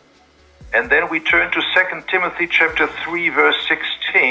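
A man speaking over a video-call line, his voice thin and telephone-like, starting a little under a second in.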